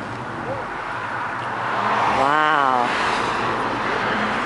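Steady background noise with one short vocal sound from a person about halfway through, its pitch rising and then falling.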